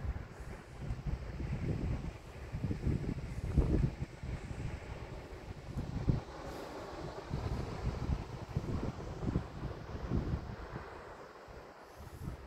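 Wind buffeting the microphone: an uneven low rumble that surges and eases in gusts.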